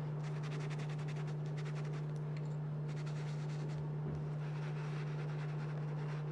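A stiff stencil brush rubbing and scratching faintly against the stencil and fabric as fabric paint is worked in. The scratching is busiest in the first few seconds and thins out after. A steady low hum runs underneath.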